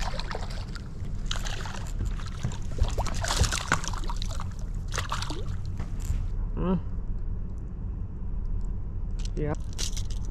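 Hooked smallmouth bass splashing and thrashing at the surface beside a boat in repeated bursts for the first six seconds or so, over a steady low hum.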